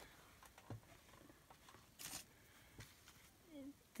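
Near silence with faint handling of paper notepads and note cards: a soft tap about three-quarters of a second in and a brief paper rustle about two seconds in.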